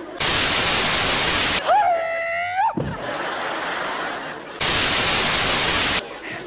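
Loud, even static hiss in two bursts of about a second and a half each, one near the start and one at the end. Between them comes a short pitched squeal of about a second, held steady and then bending sharply at its end.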